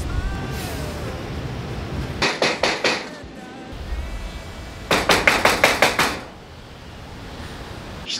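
Knocking on a metal-mesh security screen door: a short run of about four knocks, then a quicker run of about eight knocks a few seconds later.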